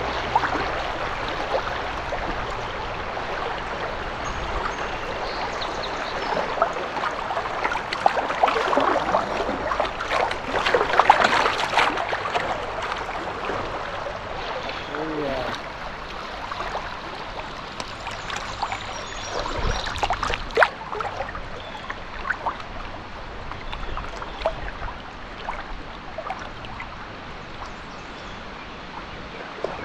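River current rushing over shallow riffles around a drifting canoe, a steady watery rush that swells for a few seconds about a third of the way in, with a few short clicks scattered through it.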